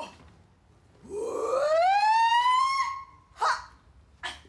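A woman's voice makes one long siren-like wail that climbs steeply in pitch, levels off and is held for about two seconds before stopping. A brief sharp sound follows just after it.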